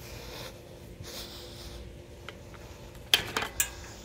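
Black metal fence gate being handled: a quick cluster of sharp metallic clanks and clicks from the gate and its latch about three seconds in, after soft rustling.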